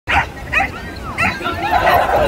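Corgis barking and yipping, three sharp high barks in the first second and a half, over a crowd of people talking.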